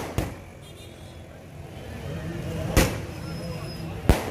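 Firecrackers going off: two sharp bangs, one just after the start and a louder one near three seconds in, over a low engine hum and crowd noise.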